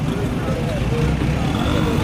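Busy outdoor market background: faint voices of people talking over a steady low rumble.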